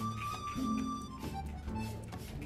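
Background music: held melody notes over a repeating bass line.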